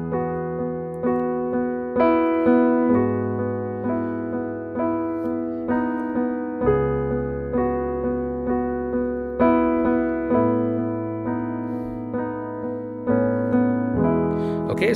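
Digital piano playing a slow pop-ballad intro in E: open, spread chords with notes picked out one after another over held low bass notes. The harmony moves E major, G-sharp minor, C-sharp minor 7th, A major, the bass changing every three to four seconds.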